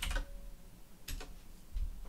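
A sharp click of a computer keyboard key about a second in, followed by a fainter click and a soft low thump near the end.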